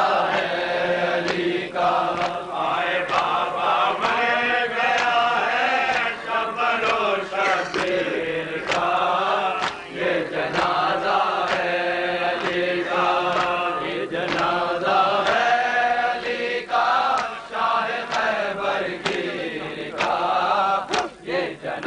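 Male voices chanting an Urdu noha (Shia lament) in unison, with regular sharp slaps of matam, hands beating on bare chests, keeping the beat.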